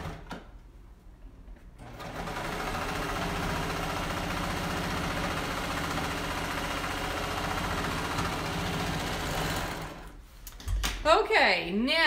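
Electric sewing machine re-stitching a short stretch of seam. After a brief pause the motor runs steadily for about eight seconds, then stops.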